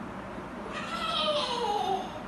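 A toddler's high, whiny, cat-like cry that glides steadily down in pitch for just over a second, starting a little way in.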